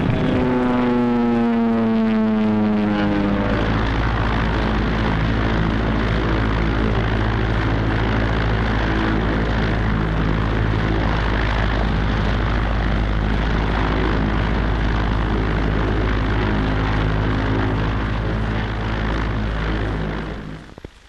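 Propeller aircraft engines droning. The pitch falls over the first three seconds, then holds as a steady low drone that fades near the end.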